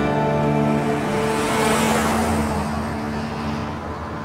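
A car driving past on a dirt track, its engine and tyre noise swelling to a peak about two seconds in and then fading, over background music with held notes.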